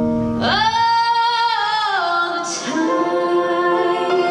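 A woman singing live over electric keyboard chords: a long held note about half a second in, then a lower held note near the end.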